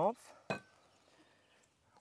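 A single light clink of tableware about half a second in, just after a short spoken word.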